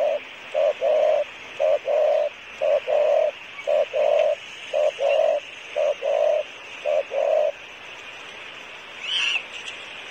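Spotted dove cooing: low coos in short-then-long pairs, about one pair a second, about eight pairs before it falls silent some seven and a half seconds in.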